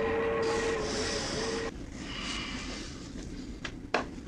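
Film soundtrack: a steady held tone with overtones over a hiss, which stops about two seconds in, leaving low background noise.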